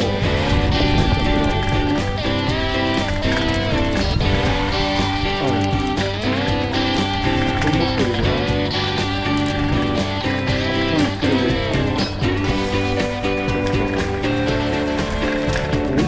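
Background music with guitar playing throughout.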